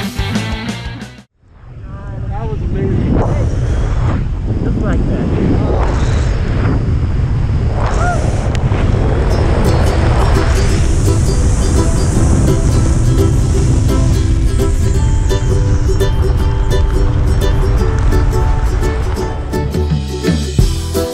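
Soundtrack music cuts off about a second in; then wind rushes and buffets the camera microphone under the open parachute canopy, a loud low rumble, while another music track fades back in from about ten seconds on.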